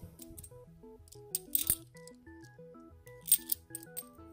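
50p coins clinking against each other as they are picked from stacks and handled, in two bursts of sharp clinks: one around a second and a half in, one just after three seconds. Background music of a simple stepped melody plays throughout.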